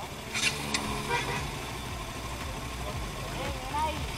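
Bajaj Pulsar NS200's single-cylinder engine idling at a standstill, a low steady hum. Faint voices can be heard near the end.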